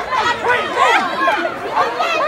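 A group of people chattering excitedly, several voices talking over one another.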